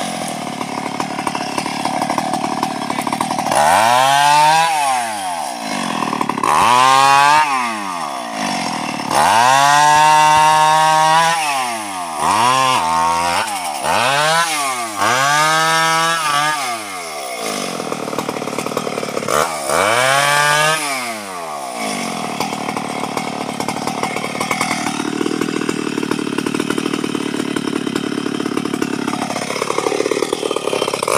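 Stihl two-stroke chainsaw revved up and down about seven times, each rev rising in pitch and dropping back, then running at a steady idle for the last several seconds.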